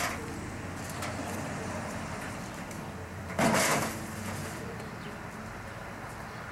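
A single short scraping clatter about three and a half seconds in, from equipment being handled, over a steady low background rumble.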